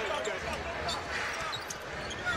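Basketball being dribbled on a hardwood court under steady arena crowd noise.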